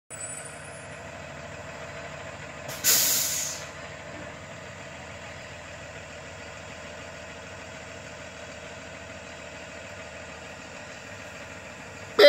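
School bus engine idling steadily, with one loud, short hiss of its air brakes about three seconds in.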